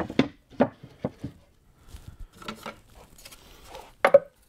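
Plywood speaker cabinet parts knocking and tapping as they are handled and fitted together: several sharp wooden knocks in the first second or so, then softer scattered taps.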